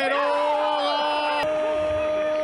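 A football TV commentator's long, drawn-out goal cry, "goooool", held on one steady pitch for a goal just scored.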